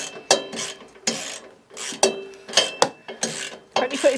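Metal parts of a new log splitter being handled and fitted during assembly: irregular clicks, clinks and short scrapes, two or three a second.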